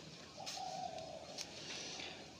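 A pigeon cooing once in the background: a single low, steady note lasting just under a second.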